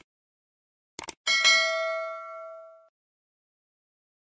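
Subscribe-button animation sound effects: two quick mouse clicks about a second in, then a bright notification-bell ding that rings out and fades over about a second and a half.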